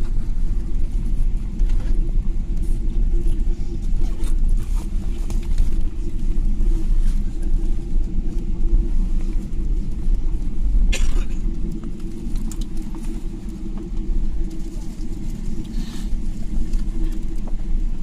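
Airliner cabin noise as the jet rolls on the ground after landing: a steady low rumble of engines and landing gear on the pavement, easing a little partway through. A sharp click about 11 seconds in.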